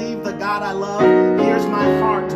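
Grand piano played in full chords with a man singing over it, a new chord struck about a second in.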